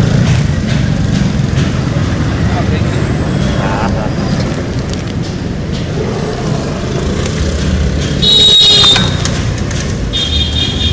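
Roadside traffic noise, a steady low rumble of passing vehicles, with indistinct voices in the background. Just after eight seconds in, a brief loud, shrill sound stands out for about half a second.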